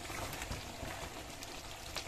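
Thick egusi soup bubbling faintly in the pot, a low steady simmer with small scattered pops.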